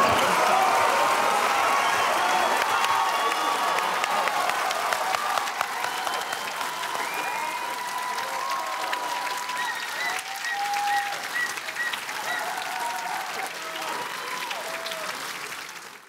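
Theatre audience applauding, loudest at the start and slowly dying away, with scattered voices calling out from the crowd.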